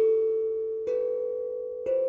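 A short musical sting of bell-like chime notes, one struck about every second and ringing on until the next, each a little higher than the one before.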